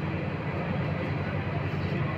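Steady low rumbling background noise of a working kitchen, even throughout with no distinct knocks or clinks.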